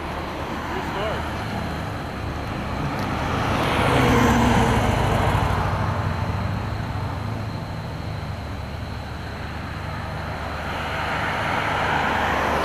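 Road traffic going past: a vehicle swells and passes about four seconds in, and another approaches near the end, over a steady low engine hum.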